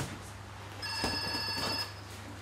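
Punches landing on focus mitts with sharp smacks, then an electronic gym round-timer buzzer sounding one steady tone for about a second, marking the end of the round.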